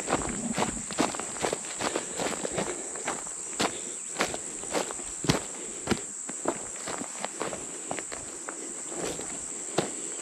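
Footsteps through grass and leaf litter, about two steps a second with uneven strength, over a steady high-pitched insect drone.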